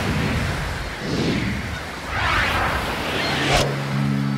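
Rushing surf-like noise that swells and fades about once a second, with a sharp hit about three and a half seconds in. Calm synth music begins right after the hit.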